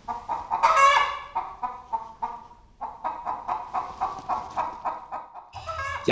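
Chickens clucking: one louder, drawn-out call about a second in, then a steady run of short clucks, about three a second, in the second half.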